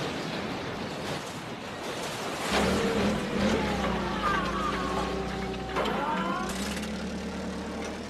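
Cartoon forklift engine running with a steady low hum as the forklift drives off, after a noisy clatter dies away in the first couple of seconds.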